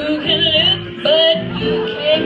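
Female vocalist singing wavering, drawn-out notes with vibrato and a rising slide into the microphone, over a live jazz band's accompaniment with low instrumental notes underneath.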